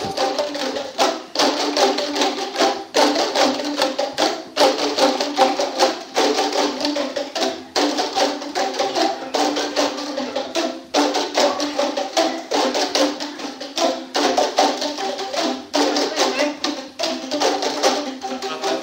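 A group playing boomwhackers, tuned plastic percussion tubes, in a dense, continuous rhythm, with several different notes sounding together.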